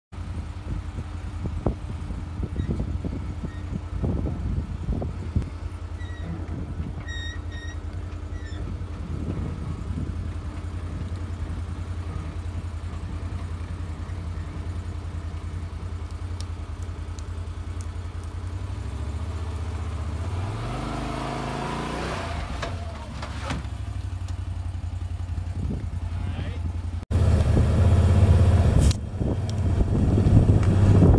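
Can-Am side-by-side UTV engine running at low revs as it crawls over a rutted dirt track, with a few knocks from the vehicle early on. About two-thirds through, the revs climb and then fall back. Near the end the engine sound turns suddenly louder and rougher.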